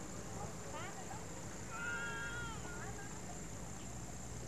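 A young child's high-pitched voice: a short rising call just under a second in, then a held, arching cry or squeal for about a second around the middle.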